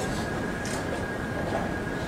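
Steady background noise of a large tournament hall with a constant thin high tone running through it, and faint soft swishes near the start and just under a second in.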